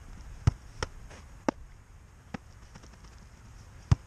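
A run of sharp thuds from a football being volleyed and caught in goalkeeper gloves, about five impacts in all, the loudest about half a second in and near the end.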